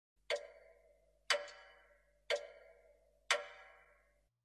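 A clock ticking once a second: four sharp ticks, each with a short ringing tail.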